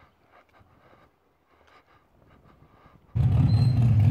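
Faint outdoor ambience, then about three seconds in a sudden cut to a loud, steady low rumble of a vehicle engine running.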